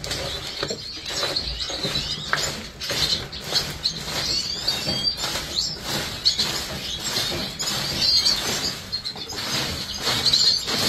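Small cage birds giving short high chirps, over a run of quick clicks and rustling from dry seed husks being pushed along the cage tray and birds hopping and fluttering in the wire cages.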